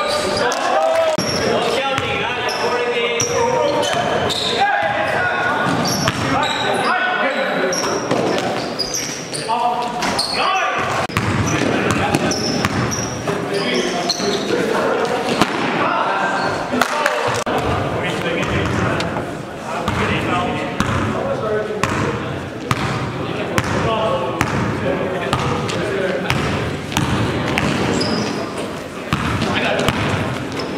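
Basketball game sounds: a basketball bouncing repeatedly on the gym floor amid players' shouted calls, with the echo of a large gym.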